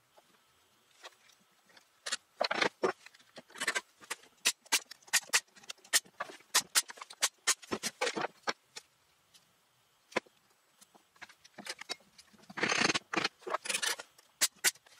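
One-handed ratcheting bar clamps being squeezed shut onto freshly glued plywood blocks: a long run of sharp clicks, several a second, with short bursts of scraping as the clamps and wood are handled.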